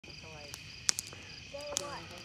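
Night insects trilling steadily at one high pitch, with a few sharp snaps from the bonfire, the loudest just before a second in.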